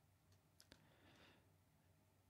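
Near silence: faint room tone with two brief, faint clicks a little over half a second in.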